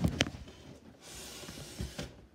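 Handling noise of a handheld camera: a short knock, then about a second of soft rustling hiss, and a small thump near the end.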